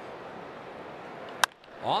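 Steady ballpark crowd noise, then about one and a half seconds in a single sharp crack of a wooden bat meeting a pitch for a ground ball. A commentator's voice comes in right at the end.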